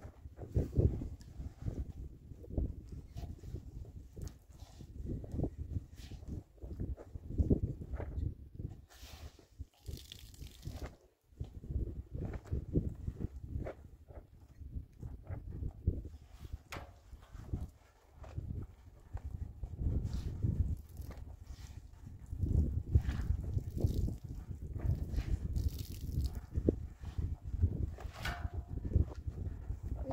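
Wet laundry being handled and hung on a line: cloth rustling and flapping, with irregular gusts of wind buffeting the microphone.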